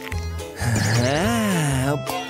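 A wordless cartoon voice, drawn out and rising then falling in pitch, over background music.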